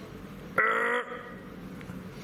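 Kitten giving one short cry, about half a second long, while its skin is being pinched to squeeze out mango worm larvae.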